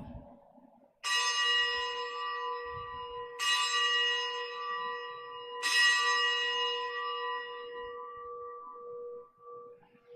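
Altar bell struck three times, about two seconds apart, each strike ringing on and slowly dying away: the bell rung at the elevation of the chalice after the consecration at Mass.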